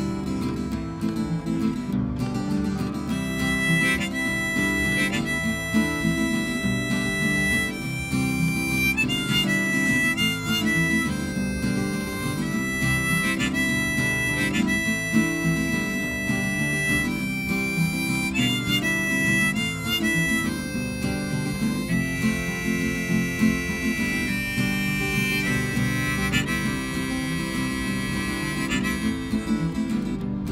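Harmonica solo over two strummed acoustic guitars in a folk song's instrumental break. The harmonica comes in about three seconds in with long held notes that step between a few pitches.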